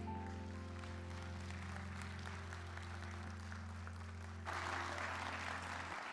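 Audience applauding as a song ends, over the last long-held low chord of the accompaniment. The clapping swells about four and a half seconds in, and the chord stops near the end.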